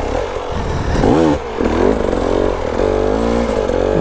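Dirt bike engines: one idling steadily close by, while another enduro bike revs up and down in bursts as it is wheelied up a steep muddy rut.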